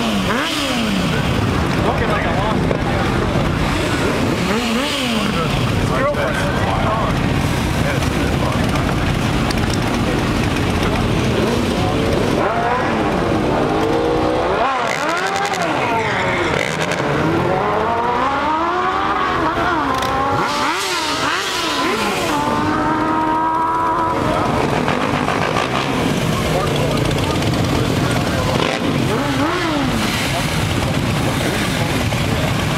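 Sport motorcycle engine revved hard again and again for a burnout, its pitch sweeping up and dropping back many times, busiest through the middle of the stretch.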